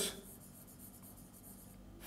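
Faint scratching of chalk writing on a blackboard.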